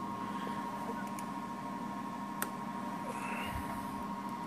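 A steady test tone, a single unwavering pitch, is fed into the CB radio for checking its transmitted signal, with a faint low hum beneath it. A single sharp click comes about halfway through.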